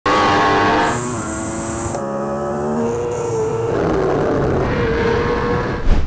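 Racing superbike engines at high revs, heard onboard, in short clips cut together so that the engine note jumps abruptly about one, two and nearly four seconds in; one note rises about three seconds in.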